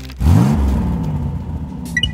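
A car engine revving: it rises sharply in pitch about a quarter second in, then holds at high revs while slowly fading.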